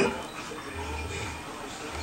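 Two dogs play-fighting: a sudden loud yelp right at the start, then low growling and faint whining.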